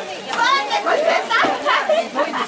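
Excited, high-pitched voices over crowd chatter, louder from about a third of a second in.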